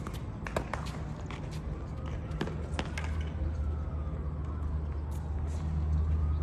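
Sharp knocks of a tennis ball being struck and bouncing, several in the first three seconds, over a steady low rumble that grows louder about halfway through, with faint voices.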